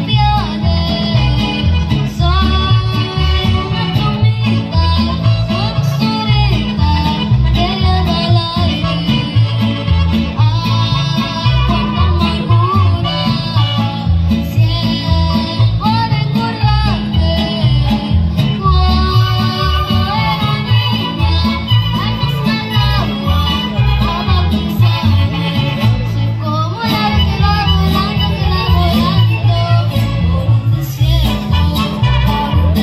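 A girl singing live into a microphone over a recorded backing track with a steady beat.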